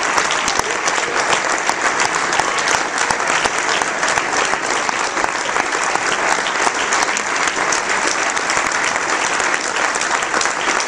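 Audience applauding: dense, steady clapping that holds at the same level throughout.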